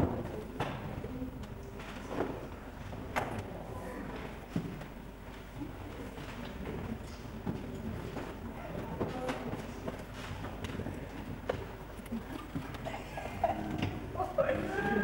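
Indistinct room noise from a seated audience: faint murmuring with scattered knocks and shuffling, over a steady low hum.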